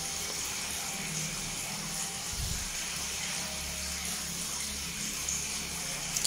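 Steady bubbling water noise from aquarium aeration in fish tanks, with a faint low hum partway through.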